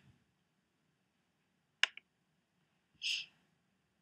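A single sharp mouse click with a fainter second click just after it, as the button is pressed and released, then a short breathy puff of noise near the end in an otherwise quiet room.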